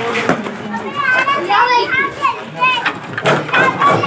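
Children talking and calling out over one another in high-pitched voices.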